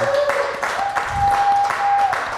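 Rhythmic hand clapping, about four claps a second, with a steady held tone over it from about a second in.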